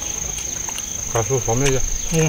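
A man's voiced 'mm' murmurs while chewing meat, about a second in, over a steady high-pitched insect drone.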